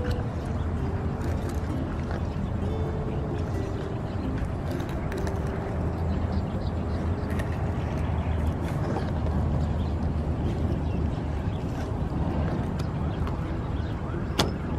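Background music with short stepped melody notes, over a steady low drone.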